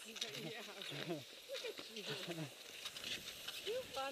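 A person's voice making short wordless vocal sounds, with light clicks in between.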